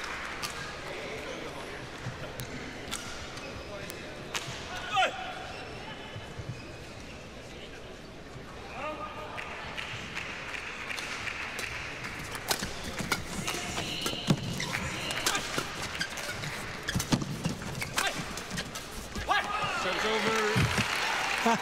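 Arena crowd murmur and voices while the players wait to serve. From about twelve seconds in, a doubles badminton rally follows: rackets strike the shuttlecock in sharp cracks about a second apart.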